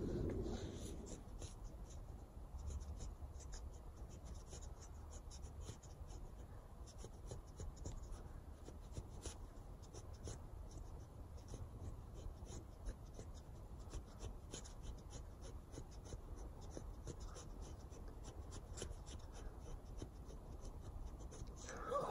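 Faint, repeated scraping strokes of a Council Tool Woodcraft Camp-Carver axe's Scandi-ground carbon-steel blade shaving fine curls off a stick.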